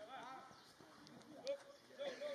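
Faint, distant voices of several people talking across an open training pitch, with one short thud about a second and a half in.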